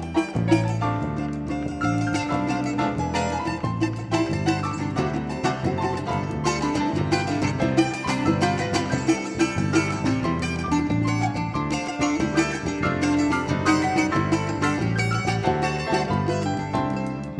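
Instrumental piece played live by a small band: Kurzweil SP88 stage piano, electric bass and a plucked acoustic string instrument over drums, with a steady, busy rhythm.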